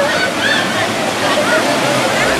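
Steady rush of falling and flowing water, with women's and girls' excited voices shouting and laughing over it.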